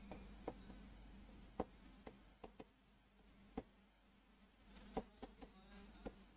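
Faint, scattered taps of chalk against a chalkboard as a word is written, about nine short ticks, over a low steady hum.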